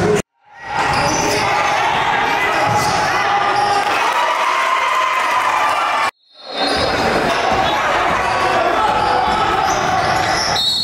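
Live game sound of a basketball being dribbled on a gym's hardwood court, mixed with players' and spectators' voices. The sound drops out completely twice, just after the start and at about six seconds, then fades back in.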